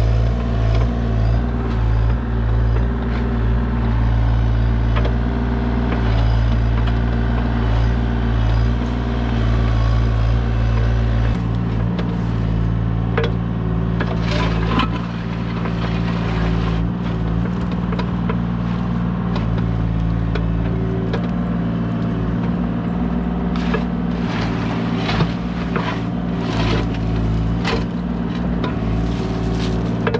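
A 2021 Bobcat E35 mini excavator's diesel engine runs steadily under hydraulic load while the bucket digs wet soil and gravel. The engine note steps up a little before halfway through. Scraping knocks of the steel bucket on stones come in clusters about halfway through and near the end.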